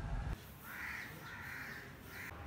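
Crows cawing faintly, a few drawn-out calls one after another.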